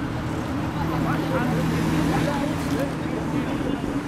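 Road traffic passing on a busy multi-lane city street. A steady low drone from a passing vehicle holds for a couple of seconds from about a second in.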